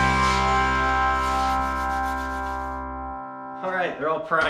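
Background music ending on a sustained chord that rings out and fades, with a man's voice beginning near the end.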